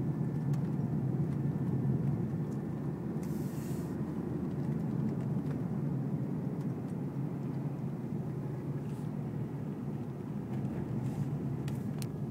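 Steady road and engine noise inside a moving car's cabin: a low rumble, with a few brief hisses.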